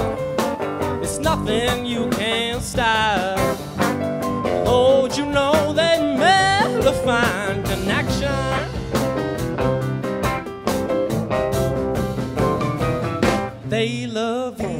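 Live rock band playing: electric guitars, bass, keyboards and drums, with a lead line of bending, wavering notes over a steady rhythm section.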